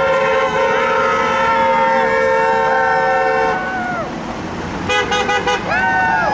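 Car horns sounding as cars pass a sign asking drivers to honk: one horn held for about three and a half seconds, then a quick run of five or six short toots near the end, with voices calling out over them.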